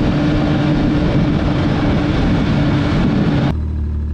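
Snowmobile running at steady speed over snow, its engine tone held steady under a heavy rush of wind and track noise. About three and a half seconds in, the sound cuts abruptly to a quieter, lower engine hum.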